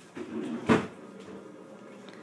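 A brief rustle of handling followed by a single sharp knock about three quarters of a second in, as of something hard bumped or set down.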